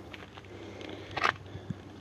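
Faint outdoor background noise with a few light clicks and one short hiss about a second in.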